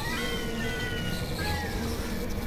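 Dense layered experimental electronic audio: overlapping pitched tones gliding slowly downward over a steady held tone and a low drone, with a meow-like quality.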